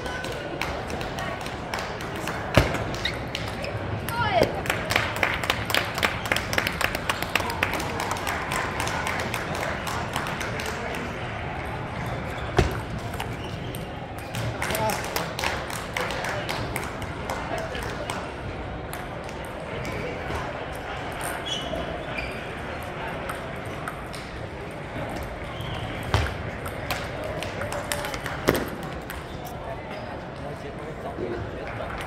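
Table tennis balls clicking off paddles and tables, with a quick run of rally clicks in the first third and a few louder knocks, over a steady murmur of many voices in a big hall full of tables in play.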